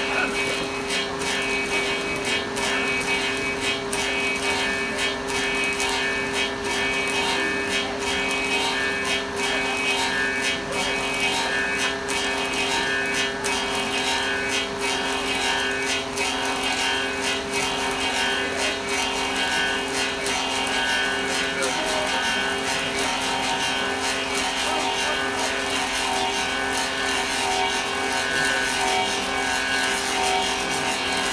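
An old German copying lathe for wooden shoes running, cutting the outside shape of a clog from fresh poplar. Its cutters take the wood off as the blank and model rotate: a steady mechanical hum with a dense, rapid chatter of cutting throughout.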